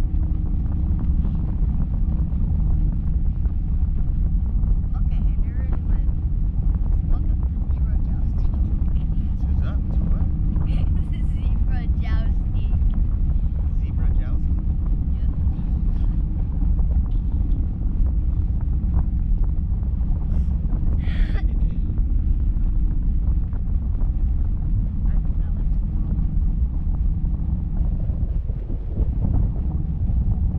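Steady wind buffeting the microphone of a camera riding under a parasail in flight, a constant low rumble, with faint voices briefly about a third and two thirds of the way in.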